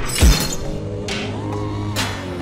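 Electronic music with a heavy deep bass hit and a downward swoop about a quarter of a second in, followed by held synth tones.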